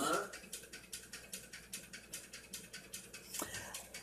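Faint crinkling of a plastic coffee bag being handled: a rapid run of small crackles, with a light tap near the end.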